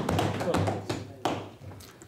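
Several scattered knocks of hands thumping on wooden parliamentary desks, with background voices in the chamber. They die down near the end.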